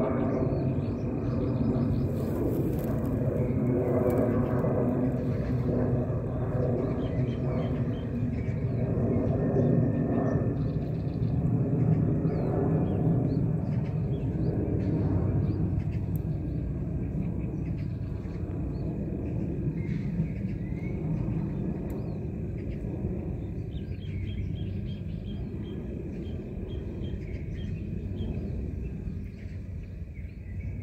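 Steady low outdoor rumble, louder in the first half and easing off later, with faint scattered high chirps over it.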